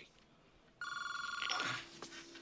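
A telephone ringing: one trilling electronic ring, a bit under a second long, starting almost a second in.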